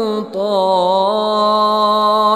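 A man reciting the Quran in Arabic as a melodic chant, holding long notes that waver slowly in pitch, with a short break about a quarter-second in.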